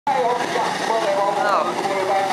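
Voices talking close by over the engines of banger race cars running round a dirt oval.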